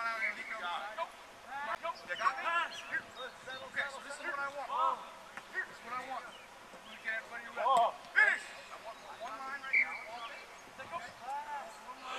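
Indistinct shouting of coaches and players across a football practice field: several separate calls, the loudest about eight seconds in.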